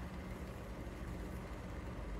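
Steady low background rumble and hiss with a faint hum, room tone with no distinct event.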